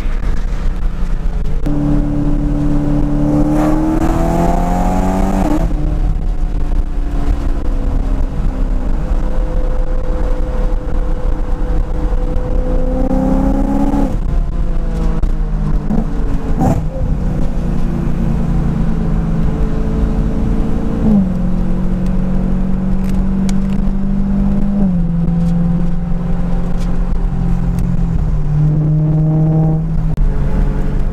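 Supercharged BMW M3 engine and exhaust heard from inside the cabin while driving: the engine note climbs under acceleration and falls back at each gear change, several times, and holds steady in between.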